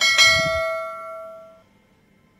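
Bell-chime sound effect of a subscribe-button notification bell, struck twice in quick succession and ringing out, fading away by about a second and a half in.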